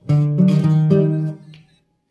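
Nylon-string classical guitar playing a short chord passage; the chords change twice and the sound dies away about one and a half seconds in.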